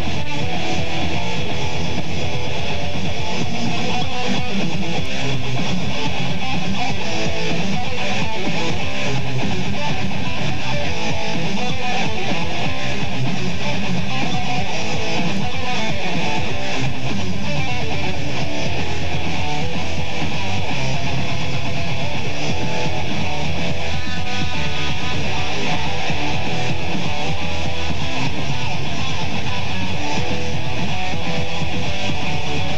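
A band playing live: loud, continuous music led by strummed electric guitar.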